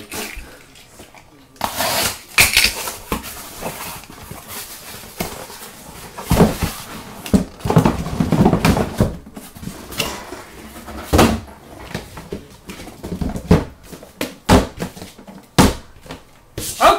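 A cardboard shipping case being handled and unpacked: cardboard rubbing and scraping, with irregular knocks and thumps as the boxes inside are moved and set down on a table.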